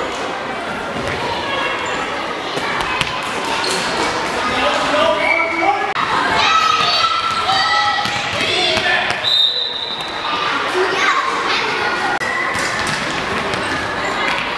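A handball bouncing on a sports-hall floor, with young girls' voices shouting and calling, echoing in the large hall.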